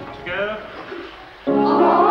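A group of boy choristers start singing a vocal warm-up exercise together about one and a half seconds in, many voices sustaining loud notes. Before that there is a briefer, quieter voice.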